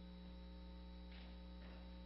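Steady low electrical mains hum with a ladder of overtones, faint and unchanging, in an otherwise near-silent room.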